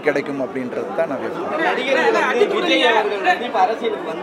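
Speech only: several people talking at once, voices overlapping in a room.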